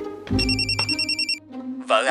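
Mobile phone ringing: a high electronic trilling ringtone that sounds for about a second, over background music.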